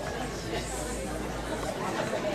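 Indistinct voices talking and chattering in a room, over a low steady hum.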